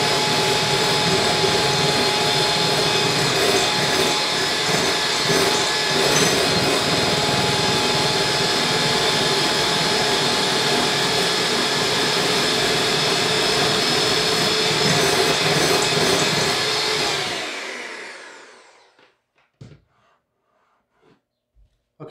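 Electric hand mixer beating egg whites to a froth in a glass bowl, its motor running steadily, then switched off about 17 seconds in and winding down. A few light knocks follow.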